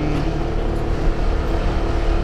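Motorcycle engine running steadily while riding, with a steady rush of wind and road noise.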